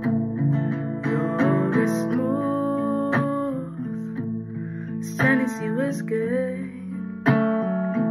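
Acoustic guitar with a capo, strumming and picking chords with a strong stroke now and then.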